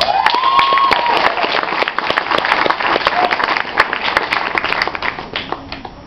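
Audience applauding: dense clapping that dies away near the end.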